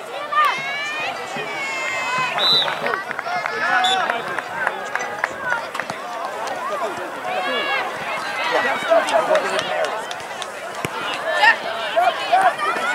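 Overlapping, indistinct shouts and calls from youth soccer players, coaches and sideline spectators, with no clear words.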